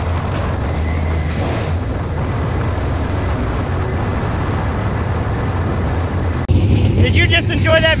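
V8 engine of a dirt Super Late Model race car heard from inside the cockpit, running steadily at reduced speed as the car slows on the cool-down lap after the race. About six and a half seconds in it cuts off abruptly and a man's voice begins.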